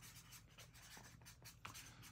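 Faint strokes of a felt-tip permanent marker writing on a paper sticky note.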